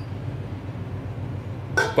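A metal spoon working soft fermented bean curd in a stainless steel mixing bowl, faint handling over a steady low hum. A voice starts near the end.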